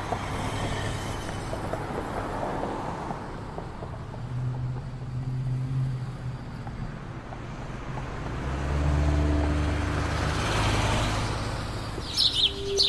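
Street traffic noise, with engines running; a vehicle passes louder for a few seconds near the end.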